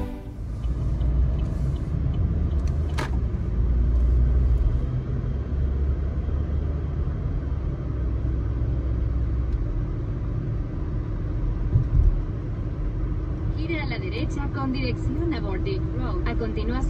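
Steady low rumble of road and engine noise inside a moving car, with one sharp click about three seconds in. A voice starts speaking near the end.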